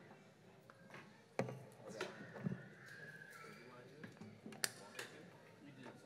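Quiet pause between songs: a low murmur of voices with a few sharp knocks and clunks of instruments and gear being handled on stage, the loudest about a second and a half in and just under five seconds in.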